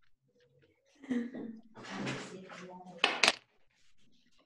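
Indistinct, untranscribed voices, with a short sharp clatter or knock about three seconds in that is the loudest sound.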